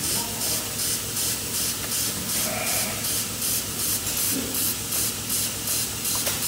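Milking machine pulsators in a sheep and goat milking parlour, hissing in an even rhythm of about two to three pulses a second over a steady vacuum hiss.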